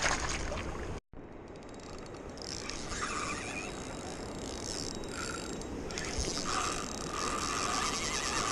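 Fishing reel's drag clicking rapidly as a hooked salmon runs and pulls line off the spool.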